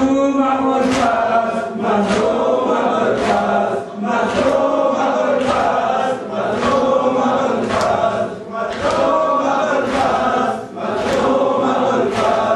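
A crowd of men chanting a mourning lament together in unison, with sharp chest-beats (matam) keeping the beat about once a second.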